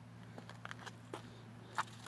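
Quiet outdoor background with a low steady hum and a few faint, scattered clicks and taps, the clearest near the end.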